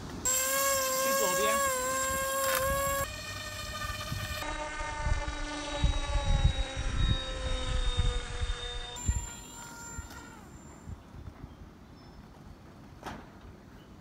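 Electric motor and propeller of a homemade foam RC ground-effect craft running at high throttle as a steady high whine. The pitch steps down about three seconds in, then slowly falls and fades over the last few seconds as the craft runs away across the water.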